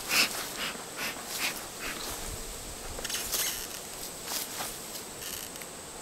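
Bee smoker's bellows being squeezed in a series of short, irregular puffs of air, as smoke is worked into a hive before it is opened.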